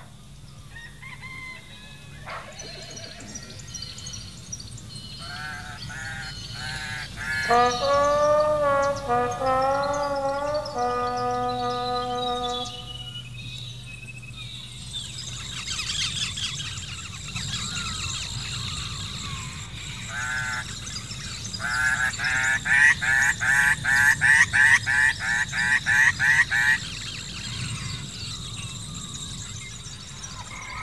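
Farmyard fowl on an old film soundtrack, with music: a long drawn-out call of several held notes, then a fast run of goose honking that is the loudest part.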